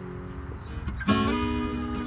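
Acoustic guitar being played: a few notes ring on, then a chord is struck about a second in and left to ring.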